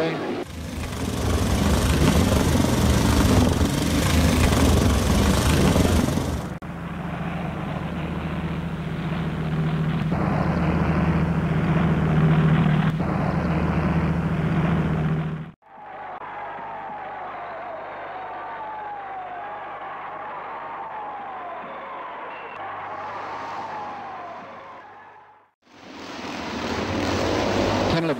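Speedway motorcycles' single-cylinder JAP engines running at racing speed, in several spliced stretches: loud and rough at first, then steadier with a low steady note. After an abrupt cut about halfway, a quieter stretch follows with engine notes rising and falling, and the loud running returns near the end.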